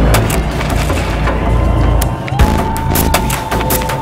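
Loud percussion for a Chinese dragon dance: a dense run of sharp strikes over a deep drum beat. A steady high held note comes in about halfway through.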